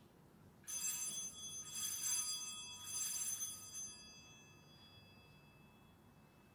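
Altar bells rung at the elevation of the consecrated host: three shakes about a second apart, each a cluster of bright, high ringing tones that rings on and fades away after the third.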